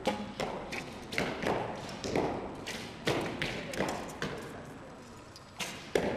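Bows being shot along an indoor archery line: sharp thwacks of bowstrings released and arrows striking the targets, irregular at about two or three a second and echoing in the hall, the loudest just before the end.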